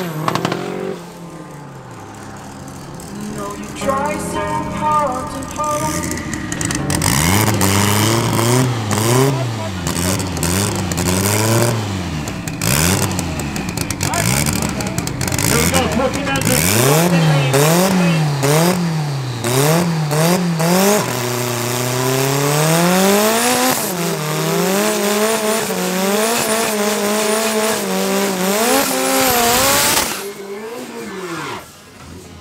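Drag-car engines revving hard in quick rises and falls at the start line. From about two-thirds of the way in, one engine climbs and holds at high revs with its rear tyres spinning in a smoky burnout. At the very start, a car's engine note is heard fading away down the strip.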